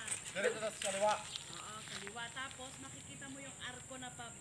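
Distant voices, loudest in the first second or so, over outdoor background with many short high chirps and a steady high-pitched hiss.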